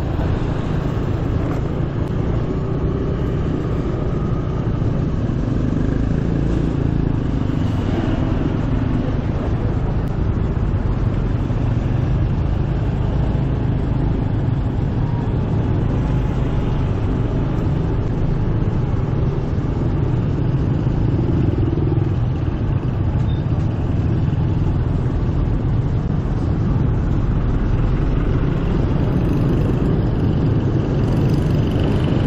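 Steady road noise from riding a motor scooter through dense city traffic: a low, continuous rumble of the scooter's engine and the surrounding motorbikes, with no distinct events.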